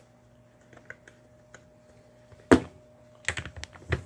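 Small clicks and taps of pliers and metal parts being worked on a chainsaw engine block, with one sharp knock about two and a half seconds in, over a faint steady hum.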